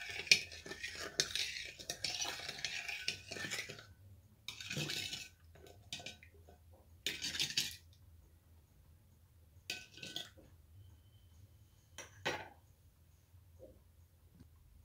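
Metal spoon scraping and clinking against a ceramic bowl, stirring yeast and sugar into warm water. Continuous for about the first four seconds, then in separate short strokes with pauses between them.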